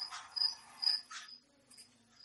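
An insect chirping: short, high-pitched chirps repeated about two to three times a second, faint behind the pause in speech.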